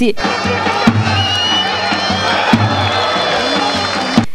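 Spectators' crowd noise with cheering, and music playing with steady held notes over it.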